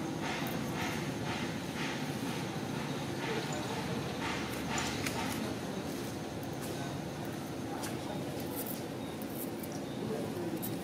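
Faint, unintelligible background voices over a steady outdoor hubbub, with scattered light scratches and taps.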